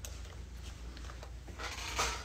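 Quiet room tone: a low steady hum with faint rustling, and a small click right at the start.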